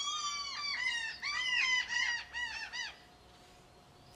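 A gull calling overhead: a rapid series of loud, squawking calls that come faster and faster, then stop about three seconds in.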